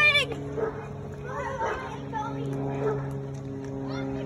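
Children's voices calling out, with a short loud cry right at the start, over a steady low hum.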